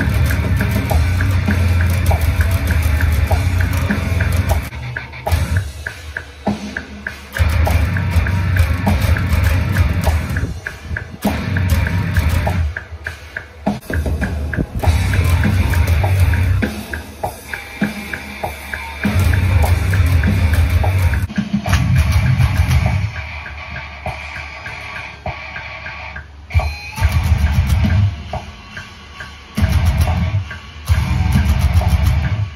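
Electric bass playing a heavy rock riff over drums, in loud low phrases broken by short stops every few seconds.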